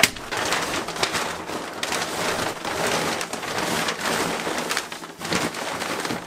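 Water from a burst giant water balloon pouring and splashing down onto a person and the floor of a narrow booth, a steady rush after a sharp snap at the start.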